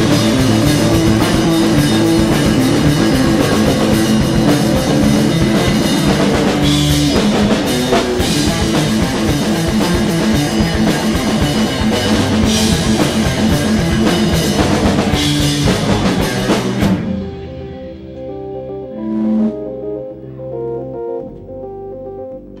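Live rock band playing loud, with distorted electric guitar and drum kit; the band cuts off suddenly about three-quarters of the way through, and a keyboard carries on alone with held notes.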